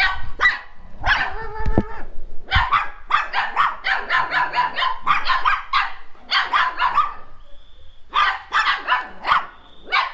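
Several young dogs and puppies barking and yapping in rapid, overlapping bursts, with a short lull about seven seconds in.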